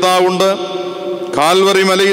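A man's voice intoning in a chant-like way, holding long level notes, with a short break about halfway through. A steady low tone runs beneath it.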